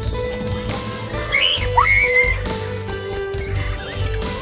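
Background music with sustained notes over a steady low beat. A brief high, squeaky sound with gliding pitch comes a little over a second in and lasts about a second.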